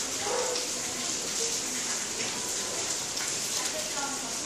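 Steady, even hiss of falling water, like rain or a running spray.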